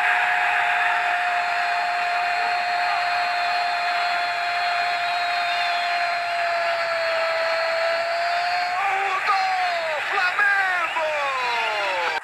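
A football TV commentator's drawn-out goal shout, "gooool", held on one steady note for about nine seconds and then breaking into falling cries near the end. Stadium crowd noise from cheering fans runs underneath.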